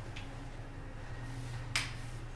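A sharp click near the end, with a fainter click just after the start, over a low steady hum.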